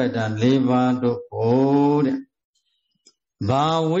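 A Buddhist monk's voice chanting a Pali passage in long, evenly intoned phrases. It breaks off about two seconds in and starts again about a second later.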